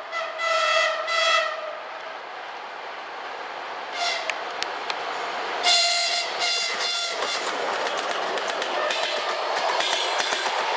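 A ChS4 electric locomotive's horn sounding a greeting: two short blasts at the start, a brief toot about four seconds in, then a quick run of short blasts around six to seven seconds. Under it runs the noise of the passenger train rolling past, with wheel clicks over the rail joints toward the end.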